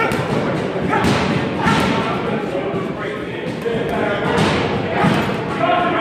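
Gloved punches landing on a hanging teardrop punching bag, a run of thuds less than a second apart, echoing in a large gym hall.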